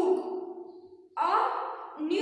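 A woman's voice reciting words aloud in a slow, drawn-out, sing-song way: one phrase trails off early on and another begins just past the middle, with a short pause between.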